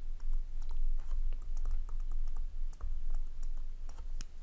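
Stylus writing on a screen: many small, irregular clicks and taps as a word is handwritten, over a steady low hum.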